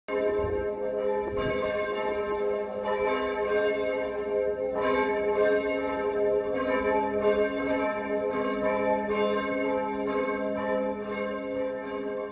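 Church bells ringing a peal, with a fresh stroke every second or two and the tones ringing on and overlapping into a sustained chord.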